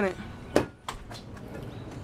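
Clicks from a car door latch and handle being worked: one sharp click a little past half a second in, then two fainter clicks.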